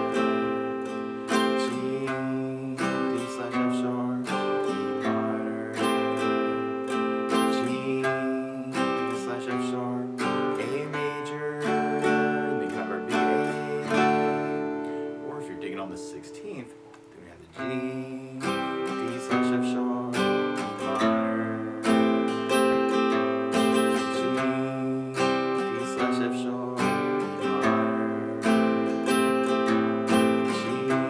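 Steel-string acoustic guitar, capoed at the fifth fret, strummed through the chords G, D/F♯, E minor and A with a bass-note-then-down-up strum pattern. A little past halfway the strumming briefly dies away, then starts again.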